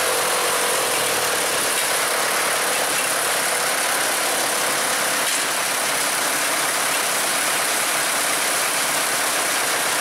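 Nuffield tractor engine running steadily at low speed, its note sagging slightly in the first couple of seconds and then holding even.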